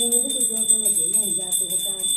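Puja bell rung rapidly and continuously, a steady high ringing, over a voice chanting a devotional hymn to Hanuman.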